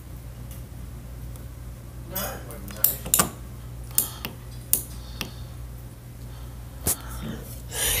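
Small plastic clicks and clatters from a string of Christmas lights and its plug being handled and plugged in overhead: several sharp separate taps over a low steady hum.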